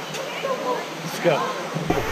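Steady rush of a waterfall pouring into a pool, under brief speech.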